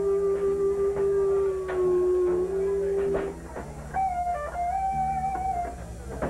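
Live band music: an electric guitar holds a long sustained lead note that bends slightly down about two seconds in, then plays higher bent notes from about four seconds in. Underneath runs a stepping bass guitar line, with occasional drum hits.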